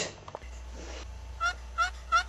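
A fowl calling in short repeated notes, each dipping slightly in pitch, about three a second, starting about one and a half seconds in, over a steady low hum.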